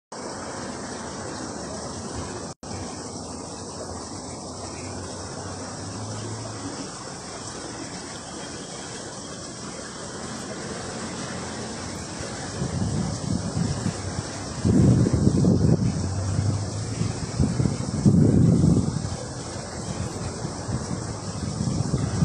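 Steady outdoor background noise: an even hiss, with louder low rumbles swelling a few times in the second half.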